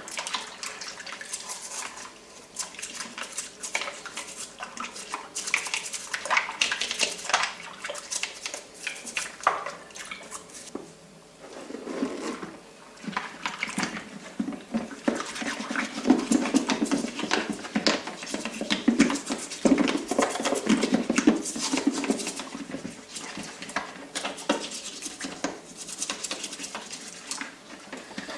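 Hard plastic toy parts being washed by hand in a ceramic sink of soapy water: water sloshing and splashing, with irregular clatters and knocks of plastic against plastic and the sink.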